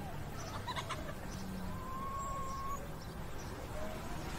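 A faint animal call: one thin drawn-out note, lasting about a second around the middle, over a steady background hiss.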